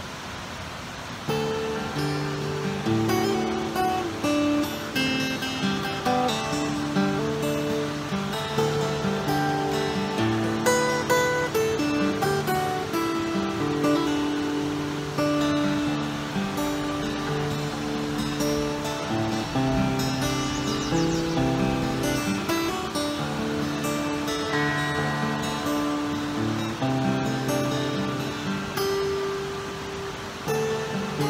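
Solo acoustic guitar played fingerstyle, a melody of single notes over a bass line; the playing begins about a second in after a brief pause.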